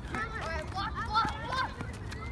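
Boys' voices calling out, the words unclear, over a steady low rumble of wind on the microphone.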